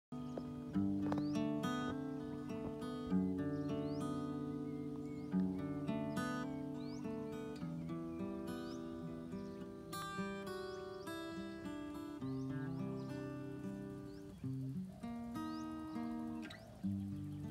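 Solo acoustic guitar playing an instrumental introduction: picked notes and chords that ring out and fade, with a few harder-struck chords in the first five seconds.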